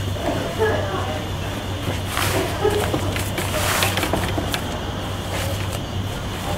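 Bimini top fabric rustling as it is slid and bunched along the metal bow, loudest in the middle, over a steady low hum.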